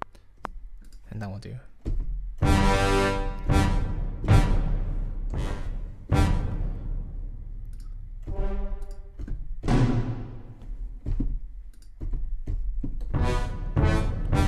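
Orchestral sample-library playback: a series of big orchestral hits with timpani and brass, each struck suddenly and left to ring out and fade, being auditioned for the track's ending.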